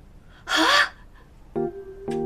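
A short, sharp gasp of surprise about half a second in, breathy with a rising pitch. A few light music notes begin about a second and a half in.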